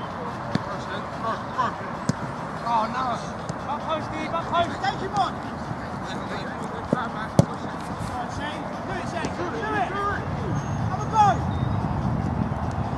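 Footballers shouting and calling to each other across an outdoor pitch, over a steady background hum, with a few sharp thuds of the ball being kicked; the loudest thud comes about seven and a half seconds in.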